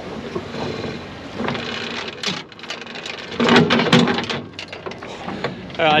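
Wind buffeting the microphone aboard a small boat, with clusters of knocks and clatters about two seconds in and again around the middle.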